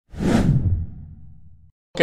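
A whoosh transition sound effect with a deep low rumble, swelling up within the first half second and then fading away over about a second.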